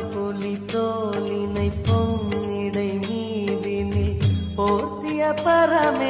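Hindu devotional song to Shiva: a voice singing a wavering melody over steady percussion beats.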